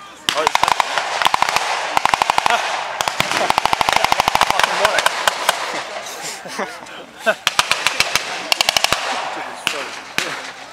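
Automatic gunfire in rapid bursts, several bursts of about a second each, the rounds coming very fast.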